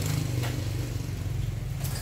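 A steady low mechanical rumble, with a couple of faint clicks about half a second in and near the end.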